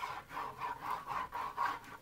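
Sponge-tipped glue applicator scrubbed back and forth over the cardboard back panel of a picture frame: a run of quick rubbing strokes, about four a second, spreading liquid glue.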